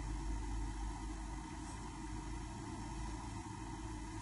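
Faint, steady low background hum and hiss with no distinct events.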